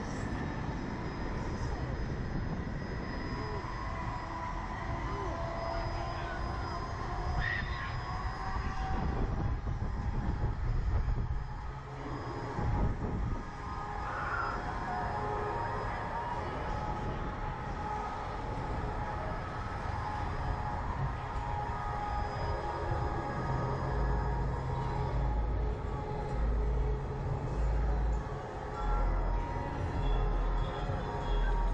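Wind rumbling and buffeting on the microphone of a camera mounted on a reverse-bungee ride capsule as it hangs high in the air. The gusts grow stronger over the last few seconds, and faint steady tones sit beneath the rumble.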